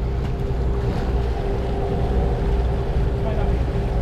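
A sportfishing boat's inboard engines running steadily while trolling: a continuous low rumble with a steady hum over it, mixed with the rush of wake water and wind.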